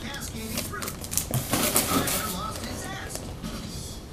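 Trading-card pack wrapper crinkling and cards being handled, a scatter of soft rustles and small clicks.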